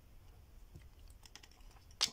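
Faint, scattered clicks and crinkles of fingernails and fingers handling a perfume box and its cellophane wrap.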